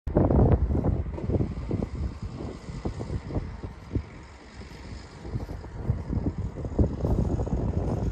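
Wind buffeting the microphone outdoors: irregular low rumbling gusts, strongest at the start and easing off around four to five seconds in before picking up again.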